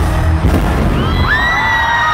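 Stage pyrotechnics going off with a sharp bang at the start and another about half a second in, over loud live pop music. After that come high held voices over the crowd.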